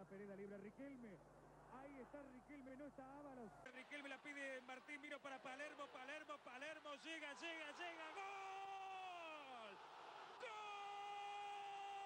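Faint Spanish-language football commentary: the commentator talks quickly and excitedly, then from about eight seconds in stretches his voice into long held shouts, ending in one steady drawn-out cry, the typical long "gol" call as a goal goes in.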